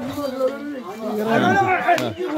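Men talking in Malayalam: only speech, with no other sound standing out.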